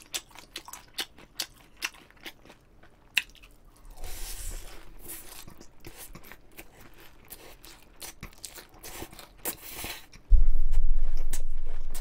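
Close-miked eating of chewy jjolmyeon noodles: many short wet chewing and lip-smack clicks with two slurps, about four seconds in and near ten seconds. Just after, a sudden loud low rumble hits the microphone and fades slowly.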